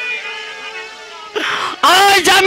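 A male jatra singer's voice, amplified through a stage microphone, trails off in a wavering wail over a faint held note. About a second and a half in comes a short hiss, and the loud singing voice comes back in near the end.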